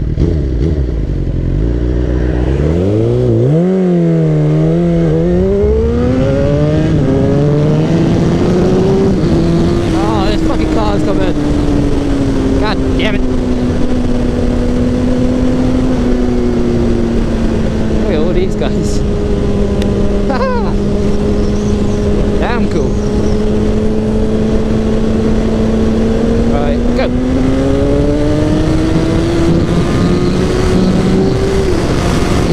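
Supersport motorcycle engine under way: it revs up and changes gear in the first few seconds, then holds a steady cruising note that sags slightly and picks up again near the end. Wind noise from riding runs under it throughout.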